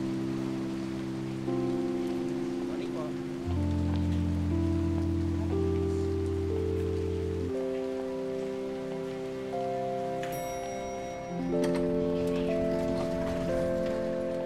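Background film score of slow, sustained chords that change every two to four seconds, over a steady hiss of rain. A brief bright chime rings about ten seconds in.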